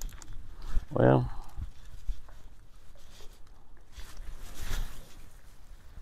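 A man's short wordless vocal sound about a second in, over wind rumbling on the microphone, with a brief rush of noise just before five seconds.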